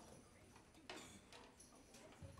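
Near silence in a hall, with a few faint clicks and knocks, the clearest about a second in.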